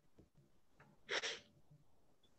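A single short, sharp burst of breath from a person, a little over a second in, just after a faint shorter intake.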